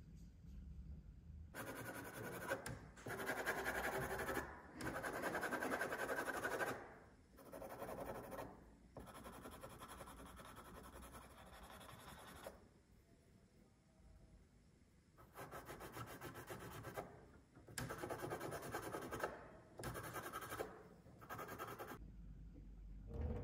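Pencil scratching across paper in runs of hatching strokes, starting about a second and a half in. The runs last from about one to several seconds each, with a longer pause a little past the middle.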